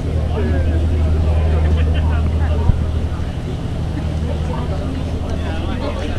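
Steady low drone of the Hakone pirate cruise ship's engine, heard from the deck, with passengers talking faintly in the background.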